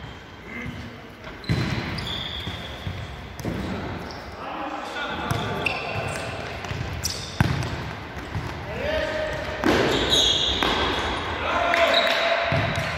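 Futsal ball struck by several sharp kicks, with shoes squeaking on the sports-hall floor and players calling out, all echoing in a large hall.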